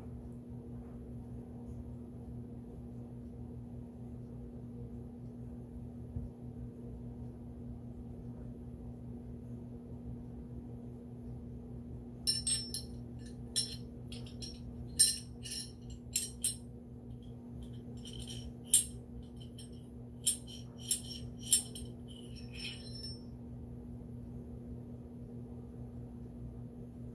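A steady low hum throughout; from about halfway in, a run of about fifteen sharp, light metallic clicks and clinks spread over some ten seconds as the barrel of a Glock 43X pistol is handled during oiling.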